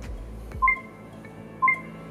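Two short electronic beeps about a second apart, from a countdown timer marking off the last seconds of a timed exercise, over faint background music.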